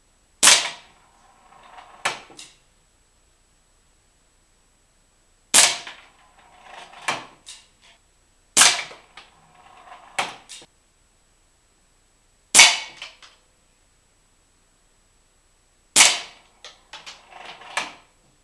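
Five air gun shots, each a sharp crack, a few seconds apart, each hitting a homemade weight-driven spinning target. After each shot comes a brief rattle as the target board turns, then a sharper knock about a second to a second and a half later. The pellet through the bullseye trips a hinge, and the board turns until it stops against the next stopper pin.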